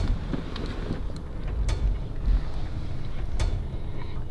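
Wind buffeting the microphone outdoors, a steady low rumble with a few faint clicks.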